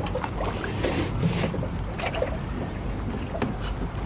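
Water lapping against a small boat's hull, with a steady low wind rumble on the microphone and scattered light knocks and ticks.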